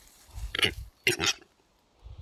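Male western capercaillie (metso) displaying at close range: short hissing, scraping notes of its lek song come in two bursts, about half a second and a second in, over a low muffled rumble.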